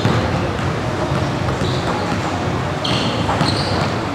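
Basketball arena ambience with a basketball bouncing on the court in the background, and a few short high squeaks about a second and a half in and again near the end.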